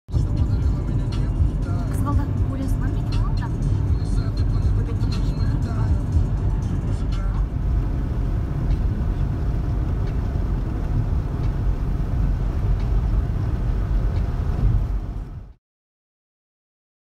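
A car driving on a paved road, heard from inside the cabin: a steady low road-and-engine rumble with scattered clicks over it in the first half. It cuts off suddenly near the end.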